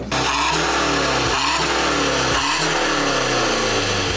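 Tuned BMW 120d F20 four-cylinder turbodiesel heard at its exhaust, revved so that the engine note swells and falls several times, about once a second.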